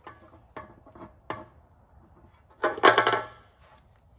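Hand work on a scooter's plastic fuel tank area: a few light clicks and knocks in the first second and a half, then a louder clatter about three seconds in as parts are handled.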